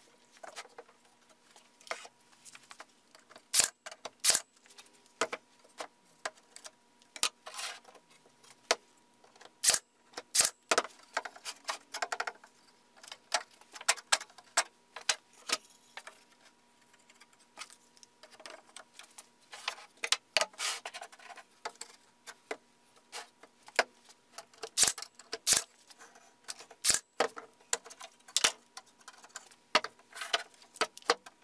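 Pallet-board slats being handled, knocked together and set down on a wooden workbench: irregular wooden knocks and clatter, some sharp and loud, over a faint steady hum.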